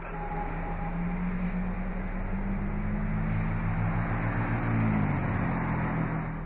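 Jeep Wrangler's 3.6-litre Pentastar V6 idling steadily, heard inside the cabin with a steady hiss of air over it. The engine note wavers briefly about five seconds in.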